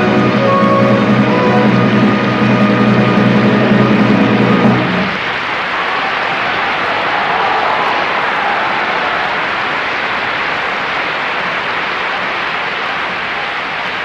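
Opera orchestra holding its closing chord, heavy with brass, which cuts off about five seconds in; after it comes steady audience applause.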